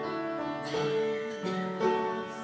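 Upright piano played solo: a slow piece with a few notes and chords struck and left to ring.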